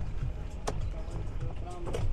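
Faint, distant voices over a steady low rumble, with one sharp click less than a second in.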